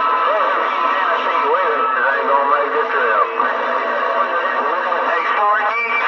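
Galaxy DX 959 CB radio receiving channel 28 (27.285 MHz) through its speaker: distant stations come in garbled and hard to make out, under steady whistling tones and hiss.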